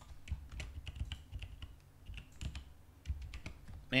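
Typing on a computer keyboard: an irregular run of key clicks, several a second.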